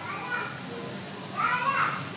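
Faint voices in the background over a steady hiss: one short call at the start and another about a second and a half in.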